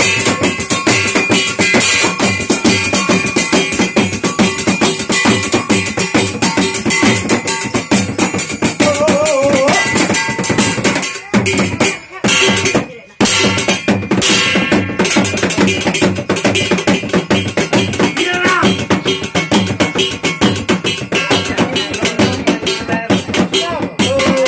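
Fast, steady ritual drumming on a shaman's frame drum beaten with a curved stick, with a ringing metallic jingle over the beat. The drumming breaks off briefly about halfway through, then resumes.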